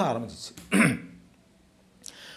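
A man's word trails off, then he gives a short throat clear a little under a second in.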